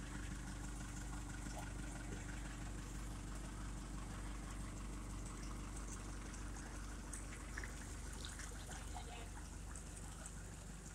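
A boat engine idling as a faint, steady low hum, with faint water trickling and splashing over it.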